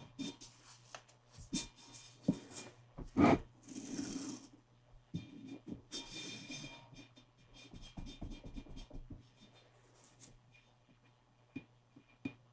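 Hands handling a clear skull-shaped container and pressing a strip of neon tape onto it: scattered taps and rubbing with short rasping tape-peel and scrape sounds. One louder knock comes about three seconds in.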